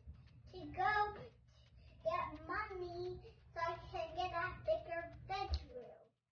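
A young girl singing, unaccompanied phrases with long held notes, over a steady low hum.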